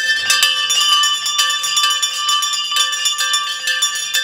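Several town criers' brass hand bells being rung together in fast, continuous clanging, their overlapping tones ringing on between strokes.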